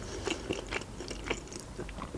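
Close-miked chewing of boiled pelmeni dumplings: soft, wet mouth clicks and smacks, a few each second.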